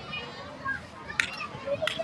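Children's voices calling and chattering across a softball field, with two sharp knocks about two-thirds of a second apart near the end.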